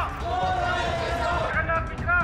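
Crowd of protesters shouting and chanting slogans, several voices overlapping, with low thuds running underneath.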